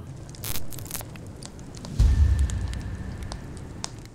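Sound-effect sting for an animated logo: two sharp hits in the first second, then a deep boom about two seconds in that slowly fades under scattered crackles.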